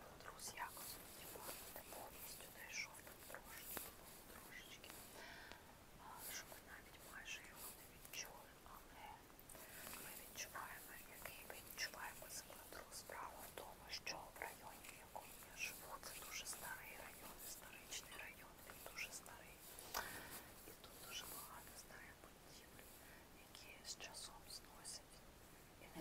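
Soft whispering by a woman, with scattered faint clicks and rustles from small handling noises.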